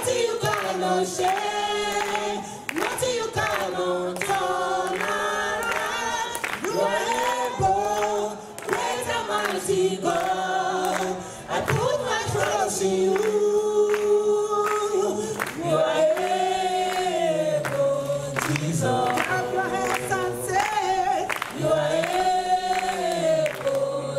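A small gospel group singing a Christian spiritual song in the Nigerian style, women's lead voices with backing singers, without a break.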